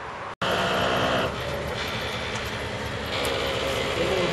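Truck engine running while a truck-mounted hydraulic loader crane lifts felled pine logs onto the bed, a steady mechanical drone with a higher whine. It starts abruptly just after the beginning and is loudest for about the first second.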